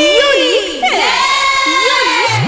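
High-pitched vocal intro of a Bhojpuri devotional song: voices calling out in wavering, swooping cries and one long arcing held note, with no band playing yet.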